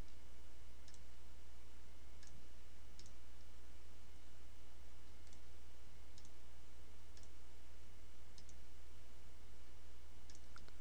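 Computer mouse button clicked about seven times at irregular intervals, over a steady low electrical hum and hiss.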